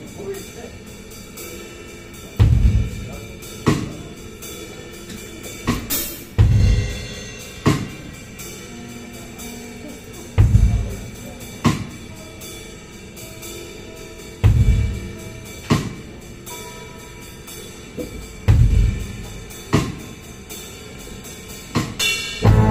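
A live rock trio of electric guitar, bass guitar and drum kit playing a sparse intro: loud accented hits on the drums and guitars about every four seconds, each followed by a smaller hit, with notes ringing in between. Near the end the full band comes in loud.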